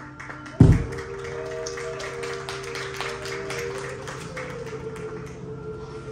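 A marching band's show opening: a single deep hit about half a second in, then held tones with fast, light ticking over them for a few seconds.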